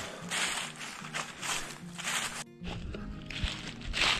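Footsteps crunching through dry fallen leaves, about two to three steps a second, over soft background music. About two and a half seconds in the steps stop at a cut, and a low rumble, like wind on the microphone, comes in under the music.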